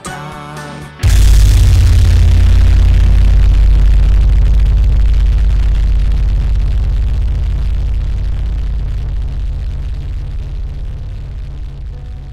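Metal music ending on a final chord: after a brief melodic passage, a very loud chord with a deep, heavy low end is struck about a second in and left to ring, fading slowly.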